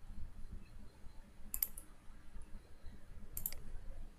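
Computer mouse clicking: two quick clicks, each a close double tick, about a second and a half in and again near the end, over a faint low background rumble.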